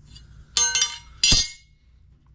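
A metal speed square set down on a concrete floor: two ringing clinks about three-quarters of a second apart, the second louder.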